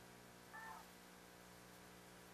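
Near silence: a steady low hum, with one brief faint pitched call about half a second in.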